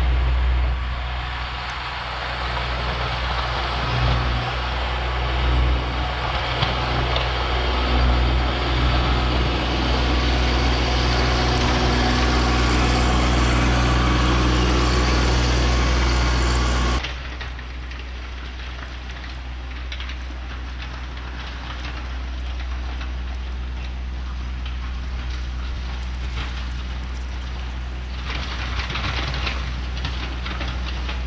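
Kubota B2601 compact tractor's three-cylinder diesel running under load as it pushes wet, heavy snow with a plow, getting steadily louder as it comes closer, with a rushing scrape of blade and snow over the engine. About seventeen seconds in the sound drops abruptly to a quieter, more distant engine that grows louder again near the end.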